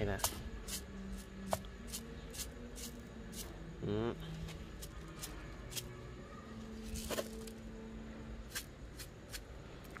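Granular snail-bait pellets rattling in a plastic bottle as they are shaken out onto garden soil: a scattered series of short, sharp little clicks.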